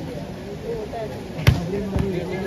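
A volleyball struck with a single sharp smack about one and a half seconds in, then a softer thump near the end, over the chatter of onlookers.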